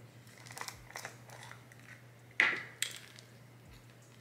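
A plastic cream jar being opened by hand: faint clicks and crinkling of the lid and inner seal, with one louder short rustle about two and a half seconds in.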